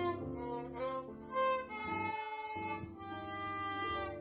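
Violin playing a slow melody of held, bowed notes, with a piano accompaniment mixed in underneath, briefly thinning about two seconds in.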